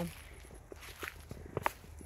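Footsteps of a person walking outdoors: a few uneven steps and scuffs, with a sharper click about one and a half seconds in, over a low steady rumble.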